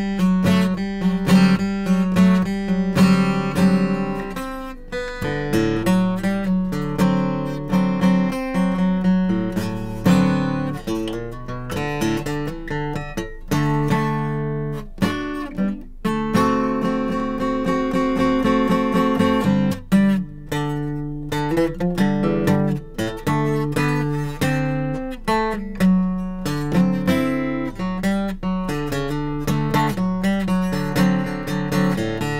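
Steel-string acoustic guitar strummed chord by chord in a steady rhythm, the fretting hand moving between chord shapes along the neck, with a few chords left to ring longer partway through.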